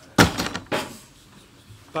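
Two sharp knocks in a room: a loud one with a short ringing tail, then a lighter one about half a second later.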